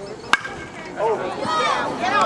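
A baseball bat hitting a pitched ball: one sharp crack with a brief ring, then spectators shouting and cheering from about a second in.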